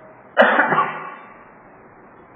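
A man coughs, a sudden harsh burst about half a second in that dies away within half a second.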